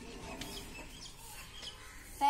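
Faint bird calls: a few short, high chirps spread through the two seconds.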